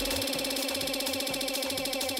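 Electronic dance music from a DJ mix, in a thin, stripped-down passage: held synth tones over a quick, even pulsing rhythm.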